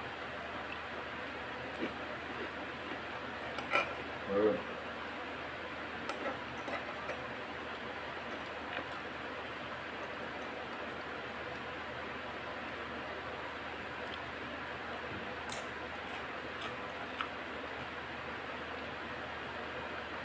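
Sparse, faint clicks and crunches of someone eating rice with crunchy tortilla chips from a spoon, over a steady background hiss. A brief vocal sound comes a little after four seconds in.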